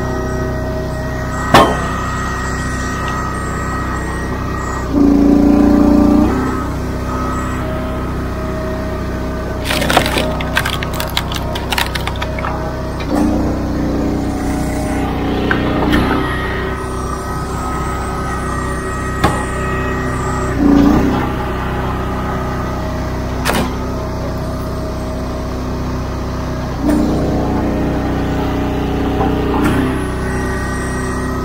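Engine-driven commercial log splitter running steadily, its note growing louder and heavier four times as the hydraulic ram drives rounds through the wedge. Sharp cracks of wood splitting come between, with a quick flurry of them about ten seconds in.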